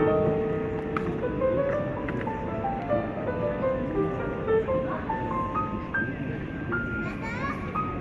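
Acoustic grand piano played outdoors: a melody of single notes climbing and falling in steps, with a higher note held near the end.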